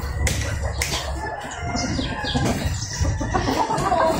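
Domestic chickens and roosters clucking and crowing, with two sharp knocks near the start.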